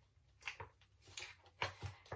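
A few faint, short crinkles of a clear plastic food tray being handled in gloved hands.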